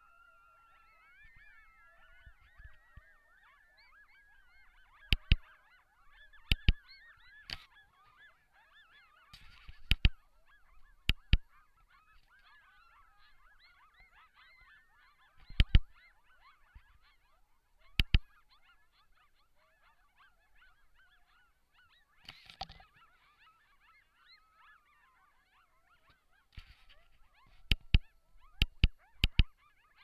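A group of coyotes howling and yipping together, many wavering high calls overlapping, opening with a rising howl. A dozen or so sharp, loud cracks cut through the chorus at irregular intervals and are the loudest sounds.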